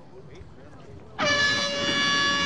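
A single steady air-horn blast that starts abruptly a little over a second in and holds for about a second and a half, over faint background voices.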